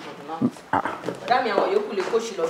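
A person's voice crying out without clear words, in a raised, wavering tone that grows louder in the second half.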